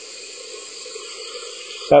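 Aerosol spray-paint can spraying black paint: a steady hiss that cuts off near the end.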